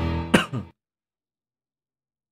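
A man clearing his throat once, a brief rasping sound with a falling pitch.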